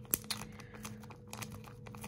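Clear plastic bag around a wax melt clamshell crinkling as it is handled: a run of light crackles, with one sharper crackle just after the start.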